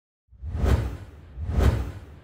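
Intro logo sound effect: two swelling whooshes with a deep bass rumble under each, about a second apart, fading away near the end.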